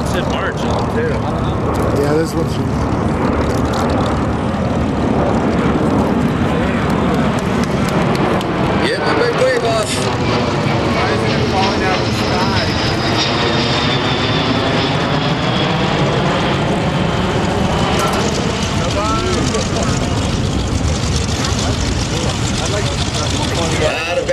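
A Boeing C-17 Globemaster III's four turbofan jet engines as the transport passes low overhead: loud, steady jet noise, with a high whine that falls in pitch through the middle of the pass as it goes by.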